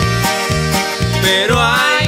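Norteño band music with no vocals: accordion melody over a steady bass beat, with a bending melodic run in the second half.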